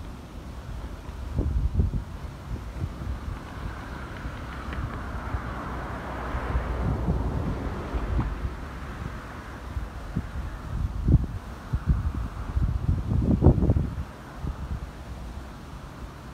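Wind buffeting the microphone in gusts, strongest a couple of seconds in and again near the end, over a faint steady rush in the background.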